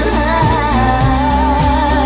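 Pop song: a female voice singing a wavering melody over a steady drum beat.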